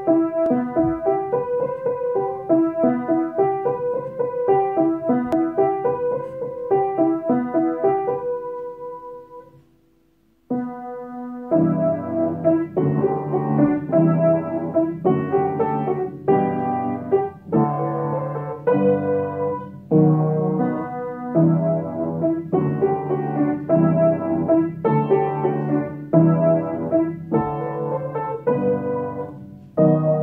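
Solo piano music. A lighter repeating melody fades out about ten seconds in, and after a short gap heavier low chords are struck in a steady rhythm.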